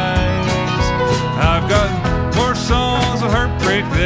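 Country song played by a band with guitar, in a short stretch between sung lines of the chorus; the melody line slides and bends between notes.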